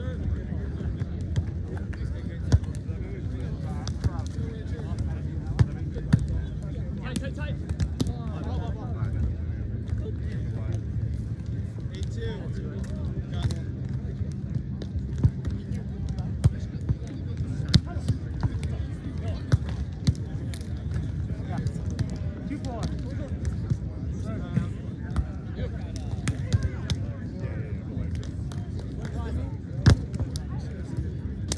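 Beach volleyball being played: sharp slaps of hands striking the ball, about a dozen scattered through, over a steady low background rumble and distant chatter of voices.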